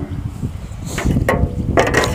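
Low rumble of wind on the microphone, with a few short knocks about a second in and again near the end.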